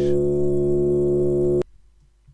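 A sample of monk chanting, time-stretched far beyond its length in Reason, plays back as a steady drone of several held pitches. It cuts off suddenly about one and a half seconds in.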